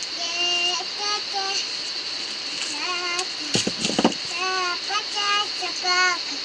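A small child's high voice singing in short, wavering phrases, over a steady high-pitched drone. About halfway through comes a brief rustle and knock as dry maize cobs are handled.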